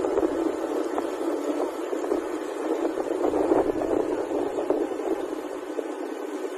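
Steady rushing wind and riding noise on a motorcycle rider's microphone while cruising along a road, with a few faint ticks and no clear engine note.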